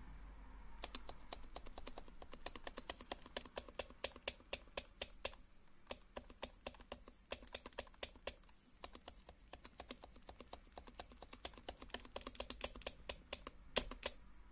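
The spacebar of an HHKB Professional Classic keyboard pressed over and over, each press a sharp, rattly clack, several a second, beginning about a second in. The rattle comes from the spacebar's metal wire stabiliser knocking against its plastic housing where the lube has worn away.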